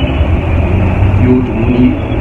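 A steady, loud low rumble with a man's voice over it in the second half.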